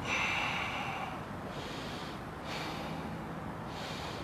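A person taking forceful breaths, one long breath followed by several shorter ones, as in an air-gulping breathing exercise.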